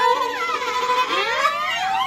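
A witch-style voice wailing, its pitch swooping down and then up like a siren, over a steady held tone that stops about halfway through.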